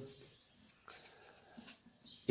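Near silence: faint room tone in a pause in the talk, with one faint click about a second in.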